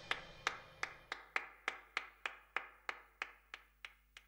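One person clapping alone, slow even claps about three a second that grow fainter, while the last of the orchestra's final chord dies away in the first second.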